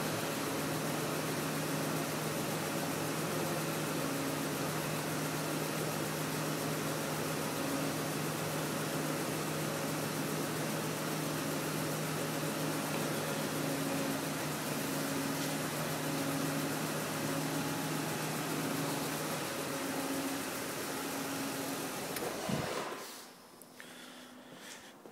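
BMW E36 M3's S50 inline-six engine idling steadily at about 900 rpm, then stopping abruptly near the end.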